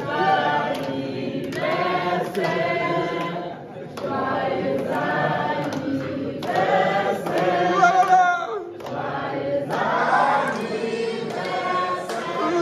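A roomful of people singing a birthday song together in phrases of about two seconds, with some hand clapping.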